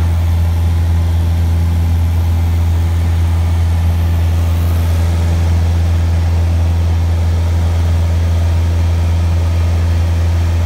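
Piper Warrior's four-cylinder piston engine and propeller droning steadily in flight, heard from inside the cabin. It is a single deep, even hum that holds at a constant pitch and level throughout.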